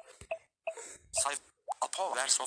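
Phone screen-reader feedback while swiping through the app drawer: three short soft beeps about a third of a second apart, then a fast synthesized voice begins announcing the screen.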